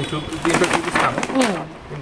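A voice talking, with a few sharp crinkles of clear plastic wrapping on boxed sarees being handled.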